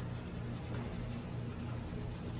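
A pink coloured pencil scribbling back and forth on paper, a steady scratchy rubbing as an area is coloured in.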